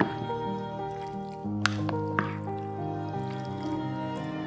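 Background music with held tones, over a few short wet squelching clicks of a wooden spoon stirring cooked fusilli through a sauce in a glass baking dish, at the start and again around two seconds in.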